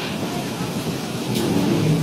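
Steady noisy rumble aboard a river passenger launch under way.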